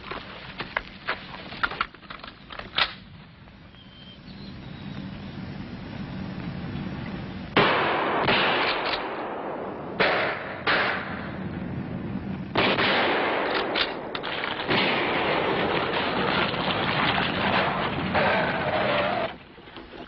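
Several shotgun blasts fired at a passing car, the first about halfway through, with sudden loud cracks over the noise of the car going by. Small clicks and a rising car noise come before the shots.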